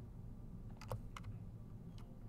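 A few faint computer keyboard clicks about a second in, over a steady low hum.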